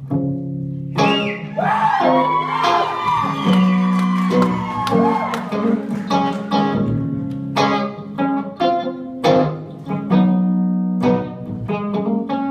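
Electric guitar played solo: notes bending and wavering in pitch over the first few seconds, then a run of separately picked single notes and chords ringing out.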